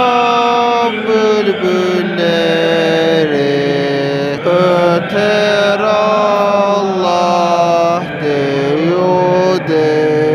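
Chanted Islamic devotional hymn (ilahi with dhikr): a single voice holds long notes that glide slowly up and down between pitches, over a steady low drone.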